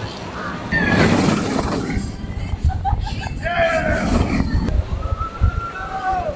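Gerstlauer Euro-Fighter steel roller coaster train rushing past on the track, a loud sudden rushing rumble starting about a second in, followed by riders screaming over the next few seconds.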